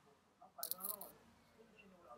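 A faint, distant voice heard briefly about half a second in, over near silence.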